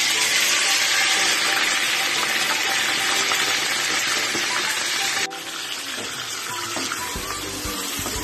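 Chunks of food frying in hot oil in a pot, a loud steady sizzle that drops suddenly about five seconds in to a quieter sizzle. Faint background music plays underneath.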